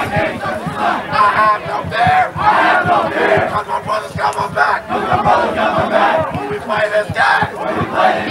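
A football team in a huddle, many players' voices shouting a team chant together in repeated loud bursts.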